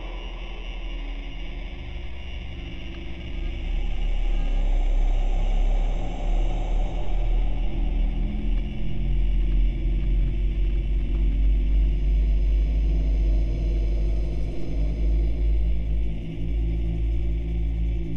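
Dark industrial ambient music: a deep, steady rumble under sustained low drone tones, swelling louder a few seconds in and holding.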